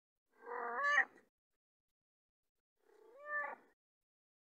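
A calico cat meowing twice, close up: a louder meow that rises in pitch at its end, then a second, quieter one about two seconds later.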